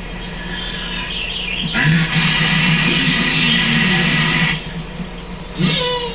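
Television soundtrack playing in the room: high chirping sounds at first, then a louder stretch from about two seconds in to four and a half, over a steady low hum.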